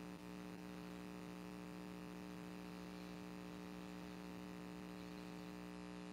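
Faint, steady electrical hum with a low buzz, unchanging throughout.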